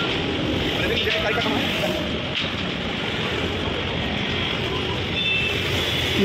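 Steady road traffic noise, with faint voices in the background during the first couple of seconds.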